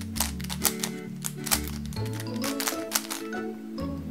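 Quick plastic clicks of a Dayan Megaminx puzzle being twisted by hand, several turns in a row, over background music.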